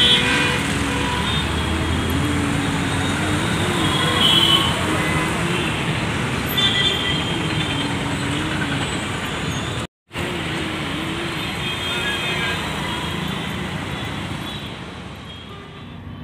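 Steady city road traffic, with short vehicle horn toots now and then. The sound drops out completely for a moment about ten seconds in.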